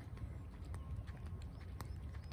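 Footsteps of a person walking, a few soft steps, over a steady low rumble of wind and handling on a handheld phone's microphone.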